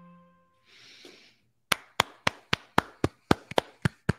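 Hand clapping: steady single claps at about four a second, starting a little under two seconds in, heard through a desk microphone. It follows the last held note of a soft music track fading out.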